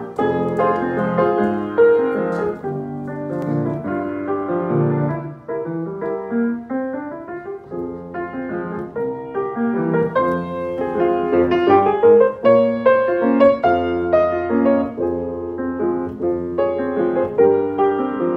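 Grand piano played live, a continuous run of melody and chords, with a rising run of notes about six seconds in.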